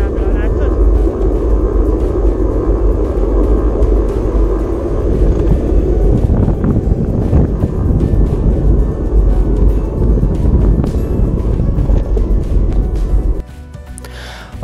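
Wind rushing over a bike-mounted camera's microphone while cycling along a street, a dense, loud rumble that drops away suddenly near the end.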